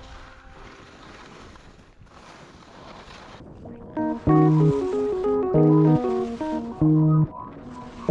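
A steady hiss of skis sliding over snow. About halfway through it gives way to loud background music with chords that repeat roughly every second.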